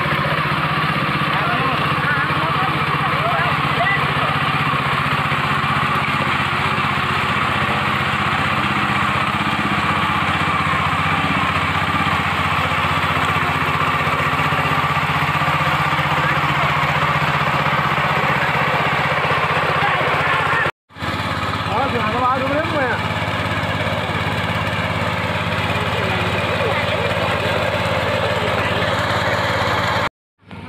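Small engine of a walk-behind power tiller running steadily as it churns a flooded paddy field. The sound breaks off for a moment about two-thirds of the way through, then carries on.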